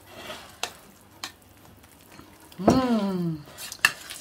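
A fork stirring and mashing thick split-pea purée and butter in a plastic bowl: a soft squelching scrape with a few light clicks of the fork against the bowl. Midway a woman hums an appreciative "mmh".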